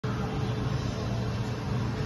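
A steady low mechanical hum, like a motor running, with a faint steady higher tone above it.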